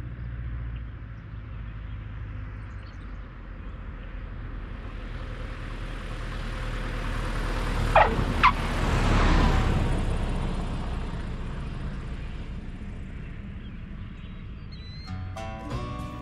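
Single-engine light airplane approaching and landing, its engine and propeller a steady low drone that grows louder as it passes close and then fades away. About eight seconds in come two short squeaks half a second apart, typical of the tyres chirping as the main wheels touch down.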